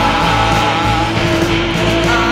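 Rock music with guitar.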